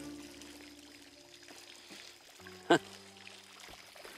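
Instrumental ensemble playing quiet held notes that pause for a moment and start again, with one short sharp sound a little over halfway in, over the steady trickle of a courtyard fountain.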